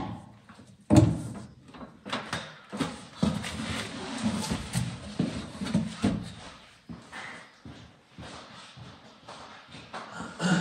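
A quick-release steering wheel knocked onto its hub, a sharp click about a second in. It is followed by a run of irregular bumps and thumps as a person clambers out of a stripped race car through its roll cage, dying down after about seven seconds.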